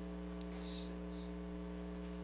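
Steady electrical mains hum, several constant tones with no change, picked up by the meeting-room audio system.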